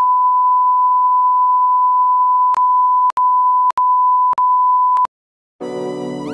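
A steady, high-pitched electronic ringing tone: the ear-ringing sound effect for a stunning blow to the head. It is broken by several short clicks and cuts off about five seconds in. Music starts just before the end.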